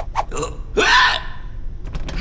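A cartoon character making short wordless vocal sounds, two brief grunt-like calls about half a second and a second in, after a couple of quick clicks at the start.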